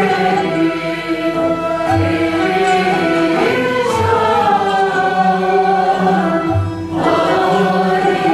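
A mixed choir sings a Turkish art song (şarkı) in makam segah, in unison with a classical Turkish instrumental ensemble, over recurring low drum strokes.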